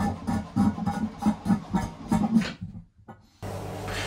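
Electric shower sump drain pump running with a rhythmic pulsing, cutting off abruptly about two and a half seconds in.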